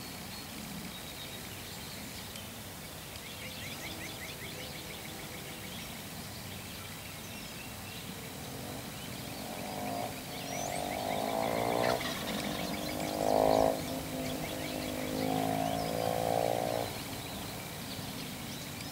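Wild turkey gobbling, a run of rough, rattling calls in the second half, the loudest a short one a little past the middle. Faint high bird chirps come before them.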